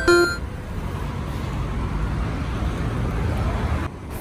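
Road traffic on a multi-lane road: a steady rumble of cars driving past.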